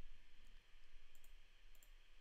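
A few faint computer mouse clicks, two of them in quick pairs, over a low steady hiss and hum.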